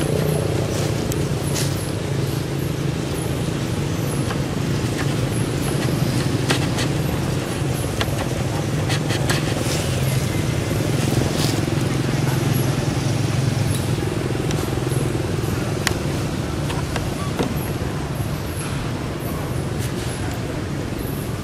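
A steady low engine hum, like a motor vehicle running nearby, with scattered short clicks and rustles over it.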